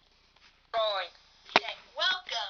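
A voice gives a short call that falls in pitch, and about half a second later comes a single sharp knock, the loudest sound here.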